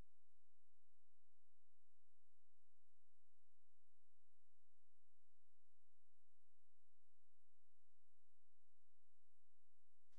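Faint steady electronic tones, several pitches held at once, over a low hiss: the recording's background noise.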